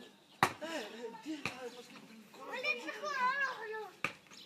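Children's voices calling out, with a long, high, wavering call near the end. Two sharp knocks come about half a second and a second and a half in.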